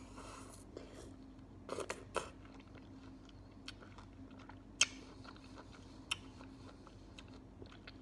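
Close-miked chewing and biting of juicy fresh pineapple chunks: scattered sharp mouth clicks, with a cluster of them about two seconds in and single sharper clicks near the middle.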